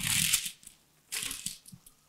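Sheet of baking paper crinkling and rustling as it is unrolled and smoothed flat on a table by hand, in two bouts: one at the start and a shorter one about a second in.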